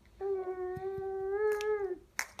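A baby's single drawn-out whine, held at a steady pitch for about a second and a half and rising slightly just before it stops.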